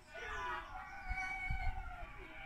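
A young child's wordless, high-pitched vocalising: one long call that bends in pitch and holds a high note in the middle.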